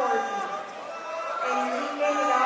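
People's voices calling out and talking around a jiu-jitsu mat, the shouts of coaches and onlookers during a match.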